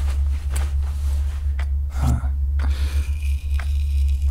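Soft rustling, scraping and small clicks of something being handled close to the microphone, over a steady low hum.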